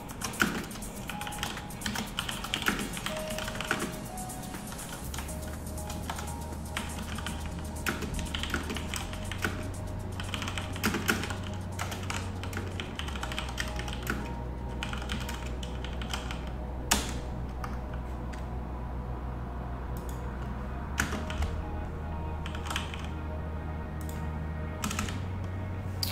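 Computer keyboard typing in bursts of clicks, dense through the first half and only a few scattered keystrokes later. Background music with a slow, stepping bass line plays underneath.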